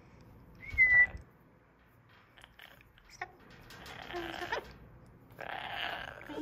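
Double yellow-headed amazon parrot vocalizing: a short, loud whistle about a second in, then two harsh, raspy calls, one near the middle and one near the end.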